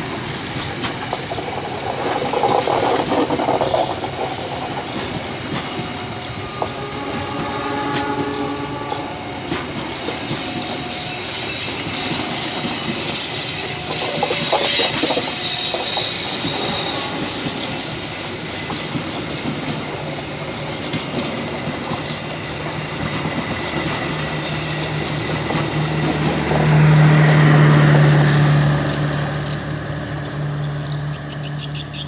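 Passenger train coaches rolling past close by on a curved track, the wheels clattering steadily over the rail joints with brief squeals in places. A louder low hum swells near the end.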